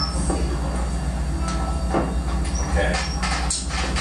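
Live stage noise between songs: a steady low electrical hum from the amplified rig, with scattered clicks and knocks from instruments being handled and a little talk in the room.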